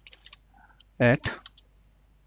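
Keystrokes on a computer keyboard: a handful of separate key clicks at an uneven pace as a word is typed.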